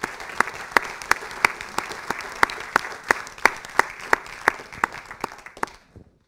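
Audience applauding, with one person's loud claps close to the microphone, about three a second, standing out from the rest. The applause dies away near the end.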